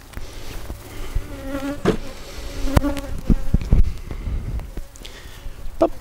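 Honeybees buzzing close past the microphone, a steady hum that swells and fades twice in the first half, with a few soft knocks and low rumbles around the middle.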